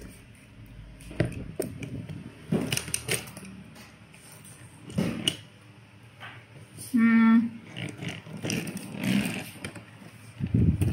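A person chewing a mouthful of soft food with the mouth closed, with scattered small mouth and handling noises. About seven seconds in comes one short hummed voice sound.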